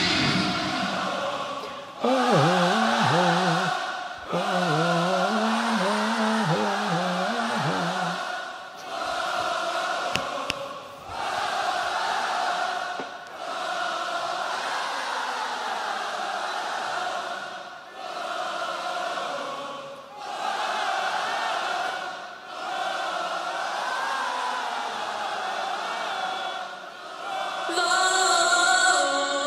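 A concert crowd chanting together in repeated phrases of about two seconds each, led in by a single voice calling out; a stadium singalong of call and response with the performers.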